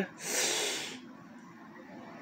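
A person drawing a quick breath in through the nose or mouth, lasting about a second near the start, followed by quiet room tone.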